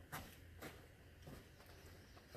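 Faint footsteps on dry, leaf-strewn dirt ground: three steps roughly half a second apart.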